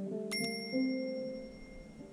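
A click and then a bright single bell ding, a notification-bell sound effect, about a third of a second in, its tone ringing on and fading over more than a second. Underneath, plucked oud notes ring and die away.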